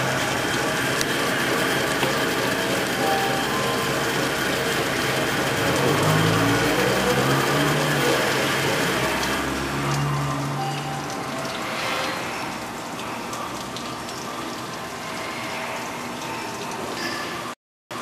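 PS 120 fish filleting machine running, a steady mechanical whir and rattle that eases somewhat from about ten seconds in.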